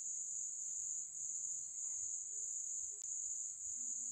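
Steady, unbroken high-pitched trill of insects, such as crickets, running on through a pause in speech, with a single faint click about three seconds in.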